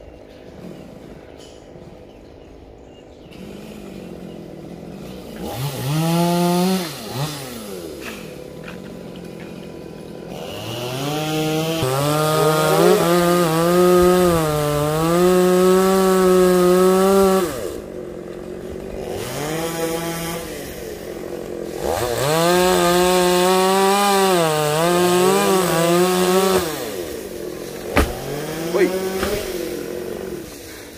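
Chainsaw cutting through a tree trunk: it revs up about five seconds in, then runs at high revs in two long cuts, its pitch dipping and recovering as the chain bites into the wood. Two sharp knocks come near the end.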